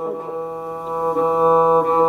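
Bowed viola da gamba music: soft, steady sustained notes, moving to a new chord a little over a second in.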